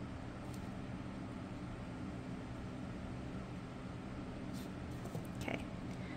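Quiet room tone: a steady low hum and hiss, with a couple of faint soft ticks from small handling sounds. A short spoken word comes near the end.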